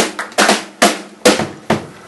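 Pearl drum kit playing alone in a jazz trio, the drummer's solo break: sharp snare and tom strikes about every half second, each ringing briefly before the next.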